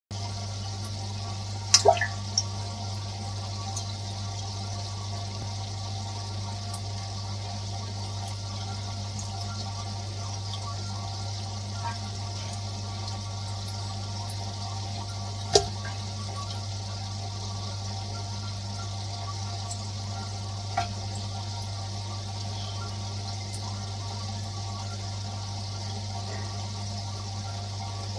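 Internal aquarium filter running: a steady rush of water and bubbles from its outlet with a steady low hum underneath. A few sharp clicks or pops stand out, a cluster about two seconds in, one near the middle and one about three quarters of the way through.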